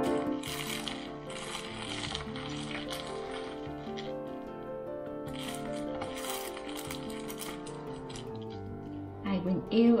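Aluminium foil crinkling in bursts as a foil-wrapped roll is rolled and pressed by hand, over background music with sustained notes.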